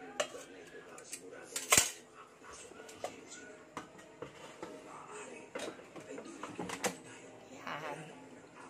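Clacks and knocks of an air fryer basket being moved and slid back into the air fryer, with one sharp knock about two seconds in.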